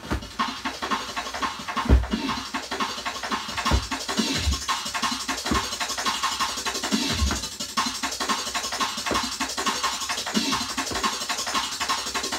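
Drum and bass track playing from a 10-inch acetate dubplate on a turntable: busy breakbeat drums with heavy deep bass hits every second or two.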